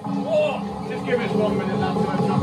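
Hubbub of many people talking at once in a crowded changing room, with no single voice clear, over a steady low rumble.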